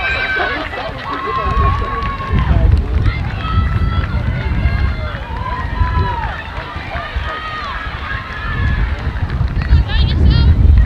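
Several voices shouting and calling out across an open field, some in long drawn-out calls, over a low gusting rumble of wind on the microphone.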